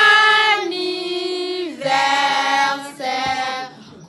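A family group of children and adults singing together in unison, with the children's voices to the fore. They hold long notes of about a second each, stepping between pitches, and the singing breaks off shortly before the end.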